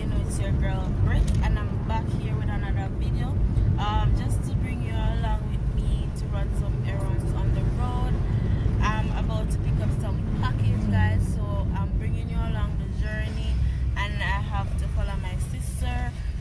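A woman talking inside a moving car, over the steady low rumble of the car's engine and road noise in the cabin.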